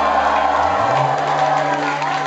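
A live rock band's closing chord ringing out through the club PA, guitar and bass held, the bass note stepping up a little under a second in. The crowd begins to cheer under it.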